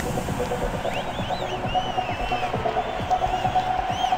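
Electronic music played live: a fast throbbing synthesizer pulse under a held note, with short high gliding sounds over it.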